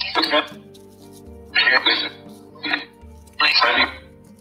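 A rough, noisy voice-like recording in four short bursts, played as a metafonia (EVP) result over soft background music with steady held tones. The uploader takes the bursts for a voice saying "Voglio dire bene, tu come stai?"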